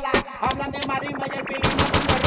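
Moombahton/dancehall DJ mix at a break: the deep bass drops out and sharp percussive hits come faster and faster, turning into a dense rapid roll near the end, like a build-up into the next drop.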